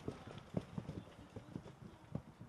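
Footsteps of several soldiers hurrying along an earth trench: a quick, irregular run of low thuds.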